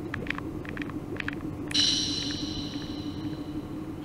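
Eerie sound effects from a horror animation's soundtrack: a steady low drone with scattered crackling clicks, then a sudden high ringing tone a little under two seconds in that slowly fades.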